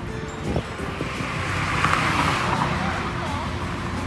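Street traffic: a vehicle passing by, its rushing noise swelling to a peak about halfway through and then fading, with people's voices in the background.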